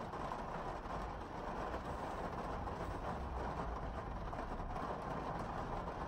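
Heavy downpour on the car's roof and windows, heard from inside the cabin as a steady hiss of rain.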